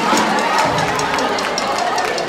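Audience applause, many hands clapping at once, with voices from the crowd mixed in.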